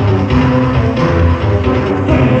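Live industrial electronic music, with a pulsing synth bass and a steady beat.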